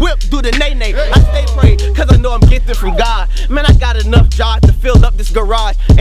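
A man rapping rapid-fire verses over a hip-hop instrumental beat, with a deep held bass and drum hits about twice a second.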